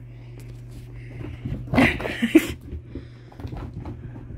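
A freshly bathed dog romping about on carpet, with a few short, noisy scuffling bursts about two seconds in. A steady low hum runs underneath.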